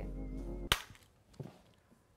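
Faint music, broken off by a single sharp crack less than a second in, after which the sound drops out.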